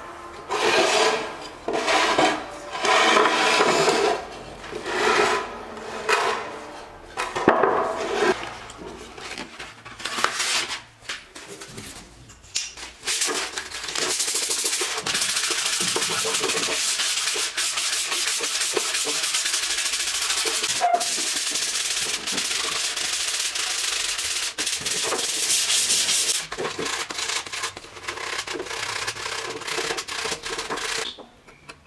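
Sandpaper rubbed by hand over a teak (sagwan) wood shelf. It starts with separate strokes about one a second, then from about halfway runs into fast, continuous scrubbing, and turns choppier near the end.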